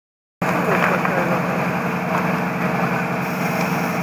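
A fire engine's engine running steadily at the scene, starting abruptly about half a second in, with voices faintly in the background.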